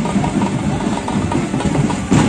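Outdoor procession din: music with drumming mixed with the running of a vehicle engine.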